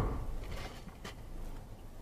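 Low rumble of a car driving on, heard inside its cabin, dying down over the first second, with a couple of faint clicks.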